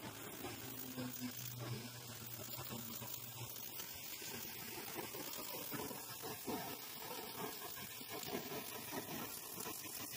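Hand-held gas torch hissing as its flame plays over the edge of wet bluestone, with a running crackle of tiny hot chips popping off the stone surface as it is flame-finished. A low steady hum runs underneath for the first few seconds.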